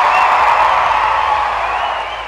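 Audience applauding and cheering, with a couple of faint whistles, the sound starting to fade down near the end.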